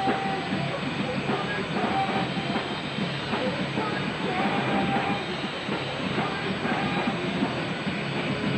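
A rock band playing live: loud distorted guitars, bass and drums in a dense, steady wall of sound.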